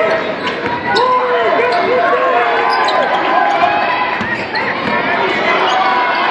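Basketball bouncing on a hardwood court in a large gym, with the crowd's voices and shouts going on throughout.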